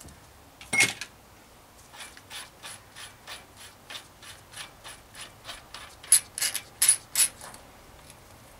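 Freehub of a Shimano Deore rear hub ratcheting in even clicks, about three a second, as the cassette is turned and worked off its splines. A sharper clack comes about a second in, and a few louder metal clinks near the end as the cassette comes free.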